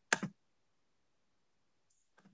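A computer mouse button clicking twice in quick succession, sharp and brief, near the start.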